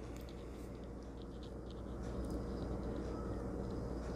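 Faint handling noise of a small plastic action figure being posed by hand: a few light clicks and rubs over a steady low hum.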